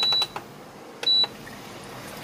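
Induction cooktop beeping as its setting is changed: a beep that cuts off just after the start, then a second short beep about a second in, both one high steady tone.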